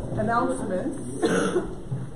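Voices talking, with a short cough a little over a second in.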